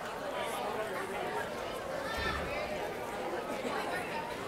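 Audience chatter in an auditorium: many voices talking at once in a steady hubbub, with no one voice standing out. A brief low thump comes a little past halfway.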